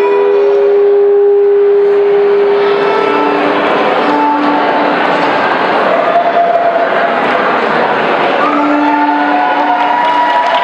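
Solo violin playing a slow tune of long held notes. The first note is held for about three seconds, then shorter notes follow at changing pitches, with the echo of a large hall.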